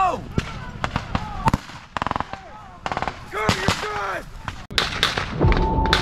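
Rifle gunfire: single shots and a short rapid burst, with a voice shouting between them. Music comes in near the end.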